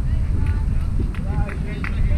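Wind buffeting the microphone in a steady low rumble, with distant, indistinct voices and a few short sharp clicks.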